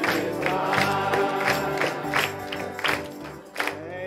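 Live church band and congregation singing a gospel hymn, the music getting quieter toward the end.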